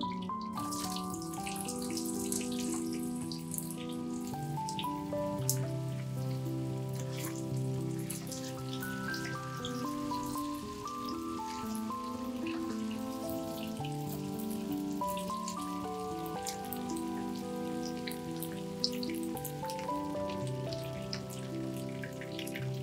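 Potato slices sizzling and crackling in hot butter and oil in a frying pan over high heat. The sizzle starts just after they are tipped in, and it plays under steady background music.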